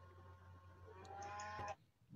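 Very quiet call audio with a steady low electrical hum. Just past halfway, a faint drawn-out pitched tone lasts a little under a second, then the sound cuts out abruptly.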